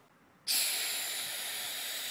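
Jet airplane sound effect: a loud, steady rushing hiss that starts suddenly about half a second in, standing in for the flight of a paper-plane airliner.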